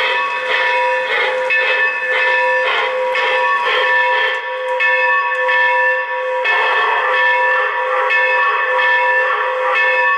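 Locomotive bell sound effect from an MTH O-gauge N&W J-class 611 model's onboard sound system, ringing steadily at about two strikes a second.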